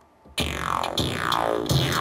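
A raw, unprocessed sampled bass sound from an old jungle record, played from the Kontakt 2 sampler. It starts about a third of a second in, with falling pitch sweeps repeating about twice a second over a heavy low end.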